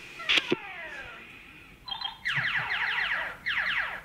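A click, then a cassette tape being rewound with its recording audible: the recorded sound squeals past as runs of rapid falling chirps.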